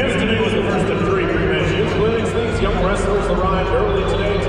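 Indistinct voices talking, no words clearly made out.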